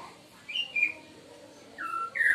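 A bird chirping: a pair of short whistled notes about half a second in and a lower, falling note near the end.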